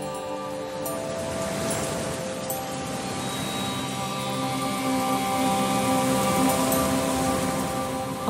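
Slow ambient music track of sustained, held notes layered with a rain sound, depicting a torrential rainy night.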